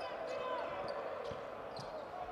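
Basketball arena sound during live play: a steady murmur of the hall with faint voices, and a couple of short knocks in the second half that fit a basketball bouncing on the hardwood court.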